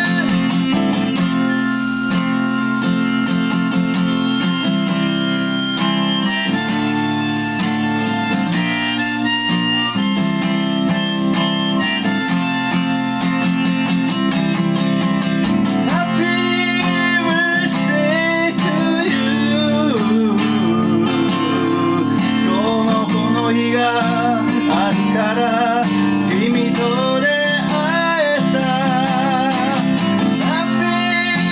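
Gibson Southern Jumbo acoustic guitar strummed in steady chords under a harmonica played from a neck rack, an instrumental folk break with no singing. From about halfway through, the harmonica line bends and wavers in pitch.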